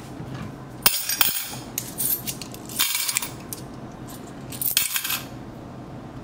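Coins and metal paper clips clinking against a glass food container, in three short bursts about a second apart.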